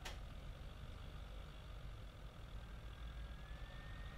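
Low, steady background hum with a single click right at the start, and a faint thin whine that rises slightly in pitch over the second half.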